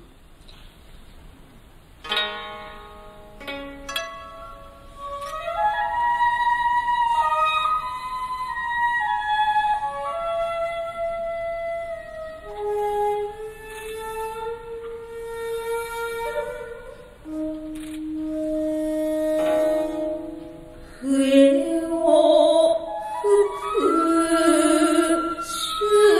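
Traditional Japanese music: a few plucked zither notes about two seconds in, then a slow, sustained flute melody with gliding held notes. Near the end a chanting voice comes in over it, the start of the poem recitation for the dance.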